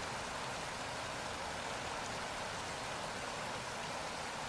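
Steady, even rush of falling water from a waterfall.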